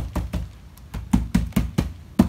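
Gloved fist knocking on the sides and corners of a square plastic plant pot: quick knocks, a brief pause about half a second in, then a faster run of about five a second. The knocking loosens the plumeria's root ball from the pot before it is lifted out for repotting.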